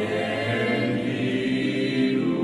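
A choir singing slowly in long, held chords.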